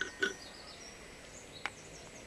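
Quiet outdoor background with faint bird chirps, and a single sharp click near the end as a glass hydrometer is set down on the plastic tops of the forklift battery cells.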